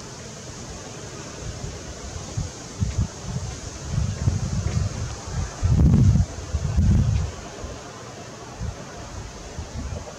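Wind buffeting the camera microphone in gusts: a low rumble that builds from about three seconds in, is loudest around six to seven seconds, then dies away to a faint hiss.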